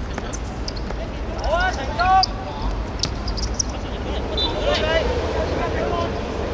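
Footballers' short shouted calls during play, two loud ones about two seconds in and more near the end, over the thuds of the ball being kicked on artificial turf.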